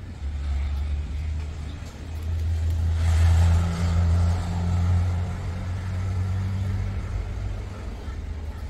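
A motor vehicle's engine rumbling past: a low hum that swells to its loudest about three seconds in, then slowly fades.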